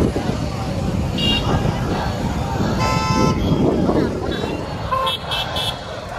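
Road traffic and crowd voices, with vehicle horns tooting: a short toot about a second in, a longer one around three seconds, and a few quick toots near the end.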